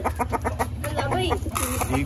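Silkie chickens clucking in short, quickly repeated calls, with a brief rustle near the end.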